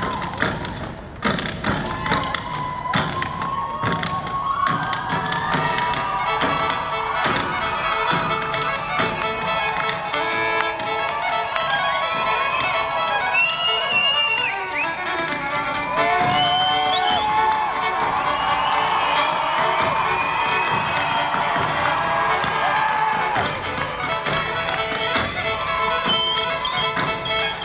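Rapid jig footwork tapping and stamping on a stage, with fiddle music and a crowd cheering and whooping over it.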